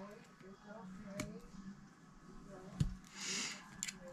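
Quiet handling of a plastic knitting loom and yarn as loops are lifted off its pegs: two small sharp clicks and a brief rustle near the end.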